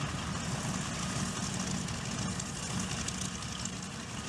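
A North American B-25 Mitchell bomber taxiing, its two Wright R-2600 radial piston engines running steadily at idle.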